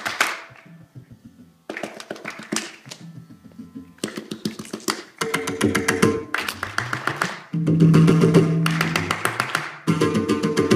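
Indian classical percussion: mridangam and tabla playing fast rhythmic strokes with ringing pitched drum tones. The sound breaks off and changes abruptly several times, and is quieter for about a second near the start.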